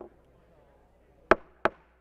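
Two sharp knocks in quick succession, about a third of a second apart, over faint room hiss.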